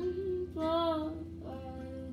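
A young woman singing to her own strummed ukulele: a sung note about half a second in, rising and falling slightly, then quieter ringing notes.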